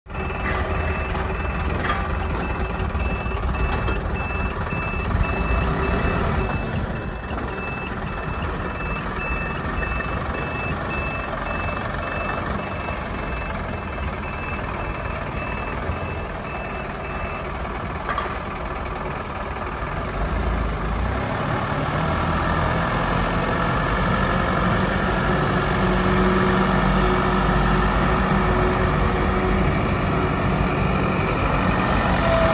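Mercedes-Benz box truck's diesel engine running while its reversing beeper sounds a steady series of high beeps, about two a second. The beeps stop a little past halfway, and the engine then grows louder as the truck drives on.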